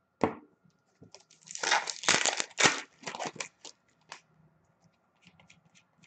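A hockey card pack's foil wrapper being torn open by hand: a short tap, then a burst of tearing and crinkling about a second and a half long, followed by a few lighter crinkles.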